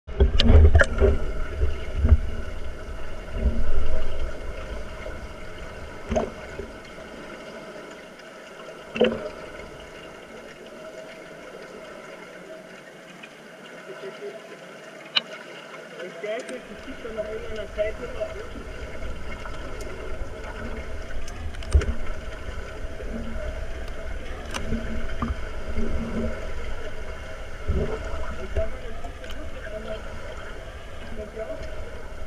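Muffled underwater sound of a swimming pool picked up by a submerged camera during underwater rugby: a low rumble of moving water and bubbles, loudest in the first few seconds, with scattered sharp clicks and knocks and a faint steady hum underneath.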